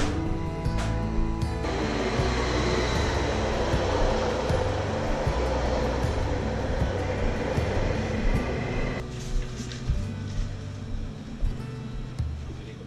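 Background music with a steady beat, and under it an electric commuter train pulling in alongside the platform: a broad rush of train noise from about two seconds in that dies away about nine seconds in.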